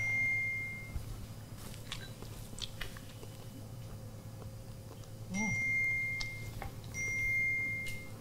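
Smartphone notification chimes: a clear single-pitched ding near the start, then two more about five and seven seconds in, each ringing for about a second, over faint room tone.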